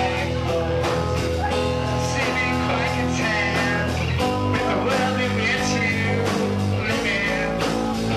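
Live rock band playing, recorded from among the crowd, with the bass moving to a new chord about four seconds in.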